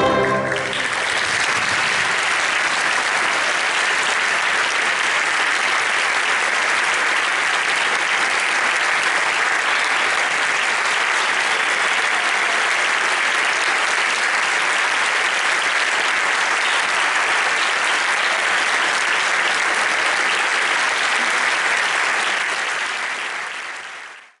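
A concert band's final chord cuts off at the very start, then steady audience applause that fades out near the end.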